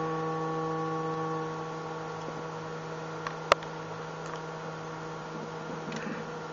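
Synthesizer test tone passing through a vactrol-controlled four-pole lowpass filter, a steady low buzzy note whose brighter overtones fade over the first two seconds as the filter is turned down. A single click sounds about halfway through.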